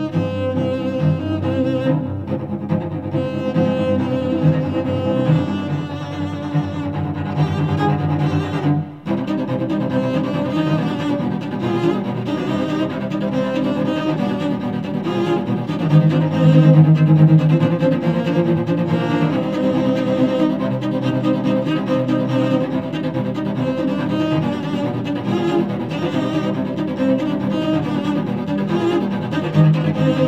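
Cellos playing an instrumental rock piece in several layered parts, with a brief drop about nine seconds in and a louder passage with a held low note a few seconds later.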